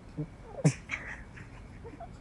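A few short, wordless vocal sounds from a teenage boy, one of them a quick falling glide, over quiet room tone.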